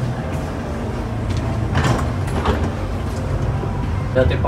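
Elevator doors sliding shut, with a knock about two seconds in, over a steady low hum.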